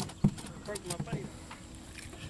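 Quiet: a single sharp knock about a quarter second in, then a few faint taps on a fibreglass boat deck, under faint background voices.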